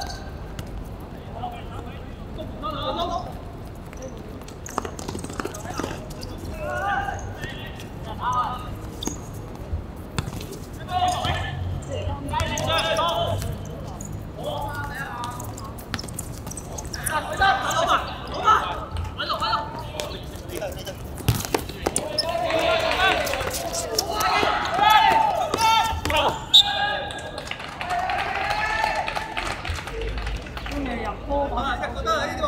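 Footballers shouting and calling to each other during play, with the thumps of the ball being kicked. The shouting grows louder and more frequent in the second half.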